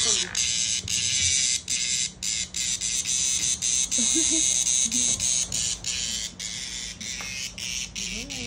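Distress buzzing of a cicada caught in a cat's mouth: a loud, high, steady buzz that cuts out briefly many times.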